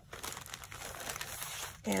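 Clear plastic bag crinkling and rustling as card-backed packages are slid out of it by hand.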